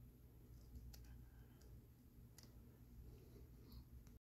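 Near silence with a few faint clicks, the clearest about one and two and a half seconds in: fingers shifting a trading card in a rigid plastic toploader.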